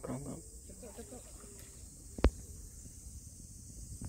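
Faint voices talking in the background over a steady high-pitched whine, with one sharp click a little over two seconds in.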